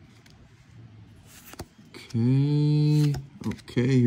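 Faint clicks and rustle of Pokémon trading cards being handled and slid through the hand. About two seconds in comes a man's long, drawn-out vocal sound at one steady pitch, and his speech starts just before the end; the voice is the loudest thing.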